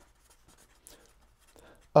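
Felt-tip marker writing on paper: faint, scratchy strokes as words are written out by hand.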